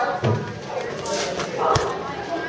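People's voices talking in a large indoor hall, with a short knock near the end.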